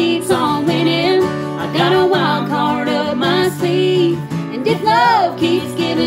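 Strummed acoustic guitar accompanying a man and a woman singing a country-song chorus together.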